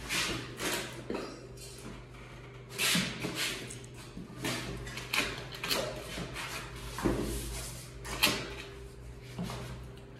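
Irregular knocks and clatter from an aluminium-framed glass door being handled and fitted into its frame, the sharpest knock just after eight seconds, over a steady low hum.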